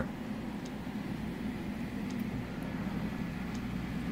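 Steady hum and whir of a powered-up desktop CO2 laser cutter and its water chiller, with cooling fans and the coolant pump running.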